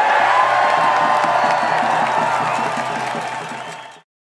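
Large crowd cheering and shouting, with one held note rising above it, fading out near the end.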